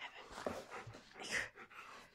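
Labrador–husky mix dog vocalizing in several short breathy bursts, the loudest a little past halfway.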